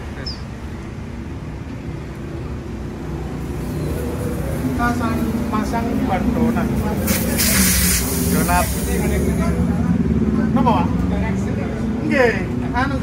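A steady low mechanical hum runs under the whole stretch, and a loud burst of hiss cuts in about seven seconds in for roughly a second and a half. Voices talk in the background in the second half.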